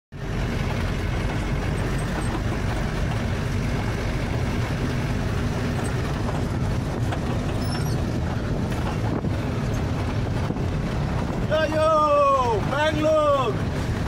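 Steady diesel engine and road noise heard inside the cab of a loaded Ashok Leyland Ecomet truck under way. A man's voice cuts in briefly near the end.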